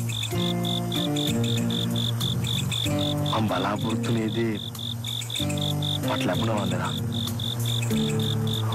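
A cricket chirping steadily in fast, even pulses, about five a second, over background music of long held chords that change every few seconds.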